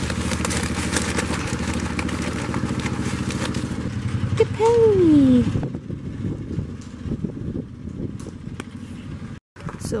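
An engine running steadily, which stops about six seconds in, with a loud falling call around five seconds; after that, scattered light clicks and knocks.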